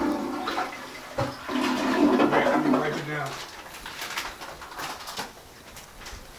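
A person's low, drawn-out voice without clear words for about the first three seconds, followed by a few light knocks.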